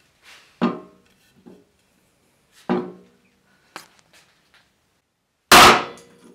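A hatchet chopping into a wooden block three times, about two seconds apart. The third blow is by far the loudest and sinks the blade into the wood.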